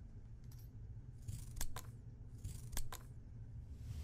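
Two sharp double snips about a second apart, each after a short rasp: small scissors cutting sewing thread.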